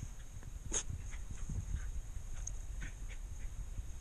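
A few faint, short whimpers from West Highland white terriers, with one sharp click about a second in, over a low steady rumble.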